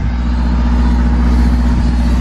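A car engine running close by, a steady low hum with a deep rumble under it.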